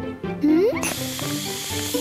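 Aerosol spray-paint can hissing for about a second as it sprays a snowball, over light background music. A short upward-sliding tone comes just before the spray.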